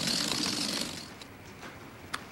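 Gas hissing from the open nozzle of a balloon-filling helium cylinder left running, fading away over about the first second.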